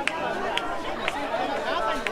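Crowd chatter: many people talking at once, close by, with several short sharp clicks scattered through it.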